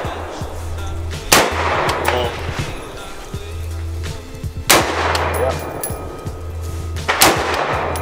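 AR-15-style rifle fired three times, single sharp shots a few seconds apart. Background music with a steady bass runs underneath.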